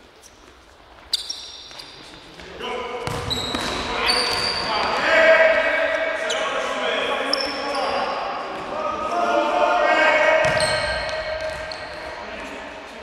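Indoor football players shouting and calling to each other, echoing in a large sports hall, with a sharp ball kick about a second in and squeaks and knocks of play on the court floor.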